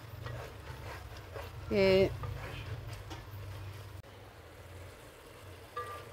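Wooden spoon stirring and scraping a thick onion-tomato masala with ginger-garlic paste in an aluminium pot as it fries, over a low steady hum.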